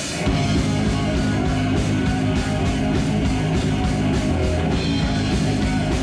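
Live heavy metal power trio of electric guitar, electric bass and drum kit kicking into a song about a quarter second in, then playing on loud with a steady, evenly spaced drum beat.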